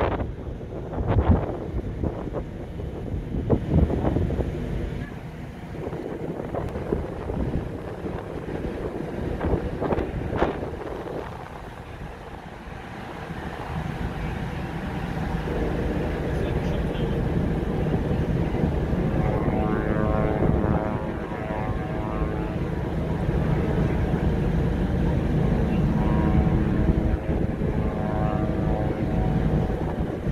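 Wind gusting on the microphone on a ferry's open deck for the first dozen seconds. Then a steady low drone of the ship's engines and machinery takes over, with a faint hum in it near the end.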